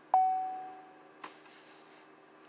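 A car's electronic warning chime: one ding that starts suddenly and fades away over about a second, with a faint click a little later.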